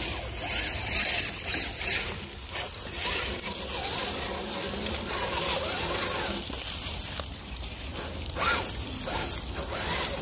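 Small electric RC rock crawler working over rock and dry leaves: a faint motor whine rising and falling with the throttle, with rustling and a sharp knock about eight and a half seconds in.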